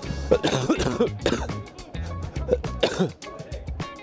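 A man coughing and clearing his throat over background music with a deep, repeating bass beat.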